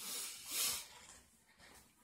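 A man's two soft breaths, about half a second apart, in a pause between words.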